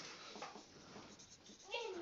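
Faint scratching of a marker on a whiteboard as letters are written, with a brief faint murmur of voice near the end.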